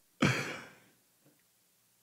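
A man's short breathy exhale, like a sigh or a breathy laugh, lasting about half a second and fading.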